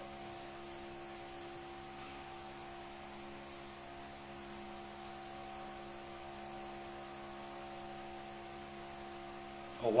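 Steady electrical hum with several fixed tones and a faint hiss under it: the room's background noise while nobody speaks.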